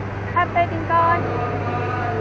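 Steady low drone of city road traffic, with short snatches of people talking nearby about half a second in and again around one second in.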